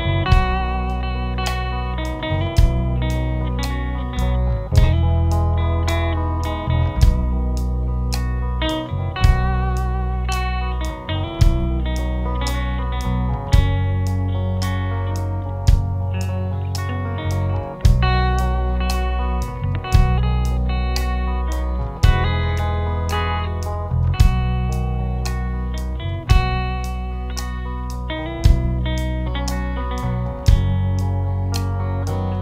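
Live band playing an instrumental passage: an electric guitar lead over bass and drums, with steady cymbal ticks and a heavy accent about every two seconds.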